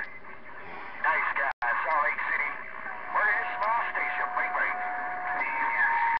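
A distant station's voice coming in over a Galaxy CB radio receiver, thin and garbled under static: a weak signal in rough conditions. It drops out briefly about a second and a half in. A steady whistle sits under it from about halfway, with a second, higher one near the end.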